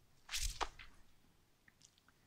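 A man's short, sharp intake of breath in a pause between sentences, followed by a few faint mouth clicks.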